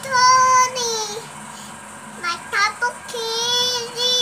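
A young child singing in long, drawn-out held notes, with a quick run of short syllables in the middle.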